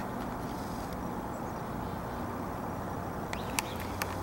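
Steady low outdoor background rumble, with a couple of brief faint clicks near the end.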